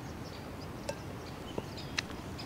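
Quiet outdoor ambience with faint, scattered bird chirps and three soft clicks, the last near the end.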